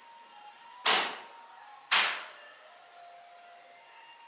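Two quick whoosh sound effects about a second apart, each swelling suddenly and dying away within half a second.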